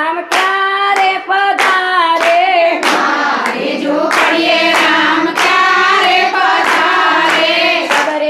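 A group of women singing a devotional bhajan in unison to steady rhythmic hand clapping, about three claps every two seconds.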